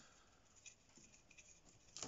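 Faint, irregular scratchy dabs of a watercolour brush working dark paint, with one sharper click near the end.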